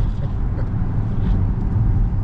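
Steady low rumble of road and running gear heard inside an Opel Insignia's cabin while driving along a wet, slushy street.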